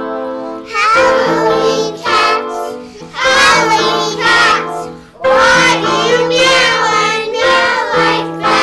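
Young children singing a Halloween song in unison with an adult woman, over held keyboard chords. The voices come in about a second in, after a short keyboard lead-in, and go on in phrases with brief breaths between.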